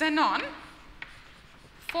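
Chalk writing on a blackboard: faint scratching with a couple of light taps as characters are written.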